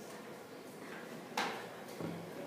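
Quiet room tone with one short knock about a second and a half in, from the smartphone in the hand being moved and handled.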